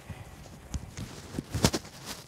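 Cotton T-shirt being pulled up and held against the body: cloth rustling with a few irregular soft clicks and knocks, the loudest a little past the middle.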